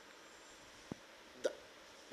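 A pause in a man's speech: faint room hiss, broken by a small click about a second in and a brief short sound about half a second later.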